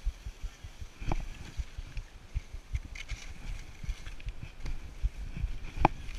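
Skis sliding and scraping over packed snow, with wind buffeting the camera's microphone. Two sharp knocks, about a second in and near the end.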